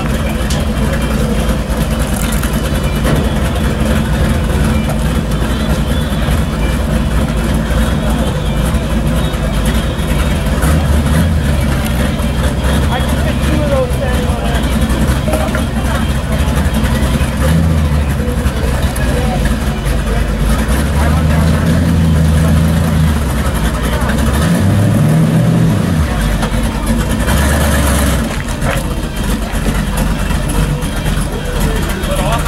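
A car engine idling, its low note stepping up and down a few times in the second half as it is revved lightly.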